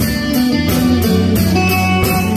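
Live band playing a song's instrumental intro, with sustained low notes under a steady beat of cymbal strokes about three a second.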